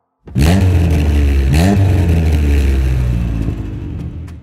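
Engine revving sound effect: a loud, deep, steady engine rumble that starts abruptly and rises briefly in pitch about a second and a half in, as a toy tow truck pulls a toy monster truck free.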